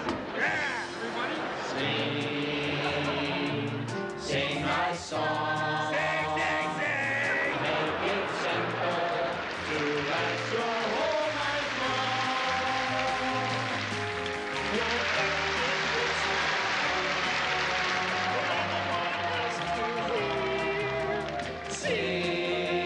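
Several voices singing a simple song together over piano accompaniment, the voices holding and gliding between notes.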